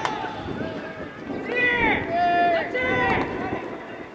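Baseball players shouting long, drawn-out calls of encouragement during fielding practice, several voices overlapping and rising and falling in pitch, with one call held steady about two seconds in.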